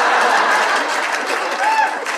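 A live audience laughing and applauding as a dense crowd noise that eases slightly toward the end, with a few individual voices standing out.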